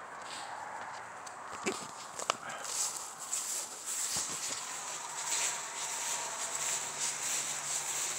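Faint outdoor night ambience: a few scattered scuffs and knocks in the first half, and a high, pulsing hiss that grows louder about three seconds in.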